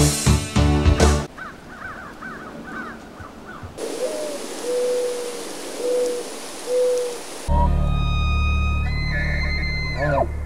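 Closing music breaks off about a second in and gives way to a logo soundtrack: faint bird chirping, then four short bird calls over a high hiss, then a steady low musical drone with held tones.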